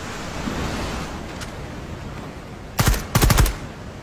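Rushing white-water rapids, with a rapid burst of gunfire about three seconds in: a couple of shots, then a quick run of several more.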